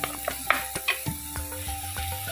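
Background music holding steady notes in a gap between sung lines, over a wooden spatula stirring and scraping frying onions and tomatoes in a pan. A few sharp taps come about half a second to a second in.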